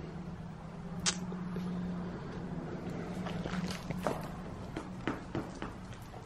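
Footsteps of sneakers on a wet concrete basement floor: scuffs and a scatter of short clicks and knocks, the sharpest about a second in, more of them in the second half, over a steady low hum.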